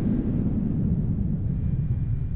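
A steady low rumble with no clear events in it.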